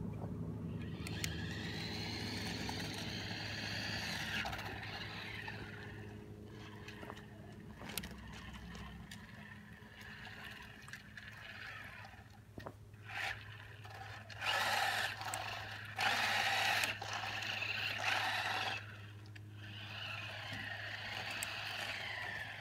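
Small electric RC car's motor whining as it drives on the road, with three short louder bursts of acceleration past the middle, over a steady low hum.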